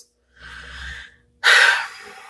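A woman's breath sounds without words: a soft, unpitched breath, then a louder, sharper one about a second and a half in that trails off.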